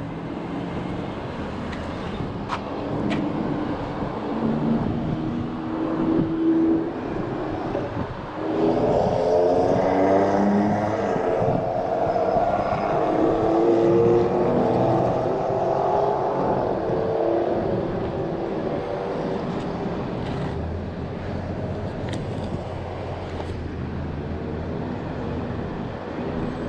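Road traffic passing on the busy street below the bridge, a steady rush of cars. From about eight seconds in, a heavier vehicle's engine note swells and is loudest for roughly ten seconds before easing off.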